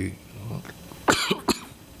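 A man coughing, two short coughs in quick succession about a second in.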